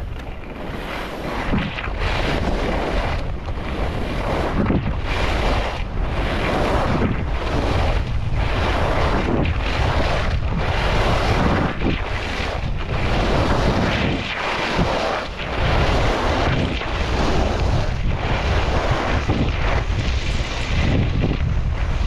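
Skis carving turns on hard-packed groomed snow, a steady hiss and scrape that swells with each turn about once a second, under heavy wind rush on a GoPro's microphone from the skier's speed.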